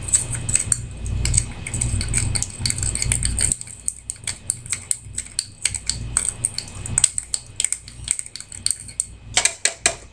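Metal spoon scraping carbon out of a briar tobacco pipe's bowl: rapid, irregular scratching clicks of metal on the bowl wall, with a quick cluster near the end. A low rumble underneath stops a few seconds in.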